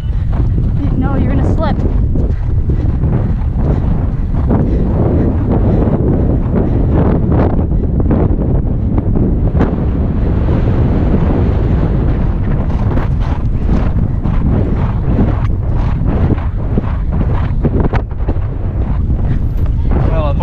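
Wind buffeting a rider-mounted camera's microphone as a horse gallops, with the horse's hoofbeats thudding irregularly underneath.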